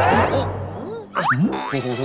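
Cartoon sound effects: springy, boing-like pitch glides, one rising at the start and another just past halfway, over light background music.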